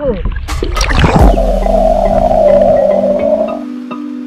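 Splashing as a handheld camera plunges under water, then a muffled underwater rush and rumble that stops shortly before the end. Background music with sustained tones comes in just after a second.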